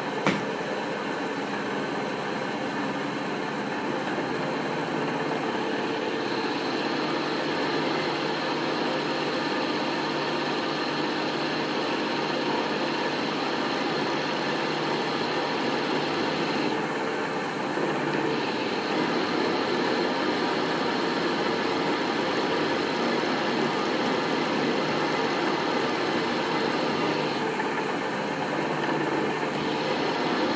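Vintage 1950s pillar drill, its motor run from a VFD, running steadily while its twist drill bores into a block of steel held in a vise. A sharp click sounds just after the start.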